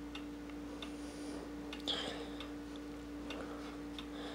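Faint ticking, roughly two ticks a second, over a steady electrical hum.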